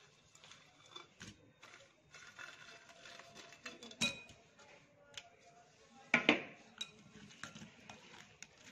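A metal spoon clinking against a glass bowl as small fried dough balls are tipped into a thick sauce: scattered sharp clinks and knocks, the loudest about four and six seconds in.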